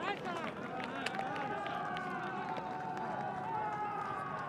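Several voices shouting after a near miss at goal, merging into a long drawn-out cry with a slowly falling pitch, with a few sharp knocks underneath.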